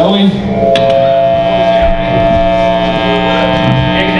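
Male rock singer holding one long, steady note into the microphone over the band, starting under a second in.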